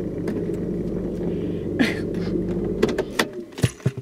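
A car's low, steady running hum stops about three seconds in. It is followed by a quick cluster of sharp clicks and knocks as the phone camera is handled and moved.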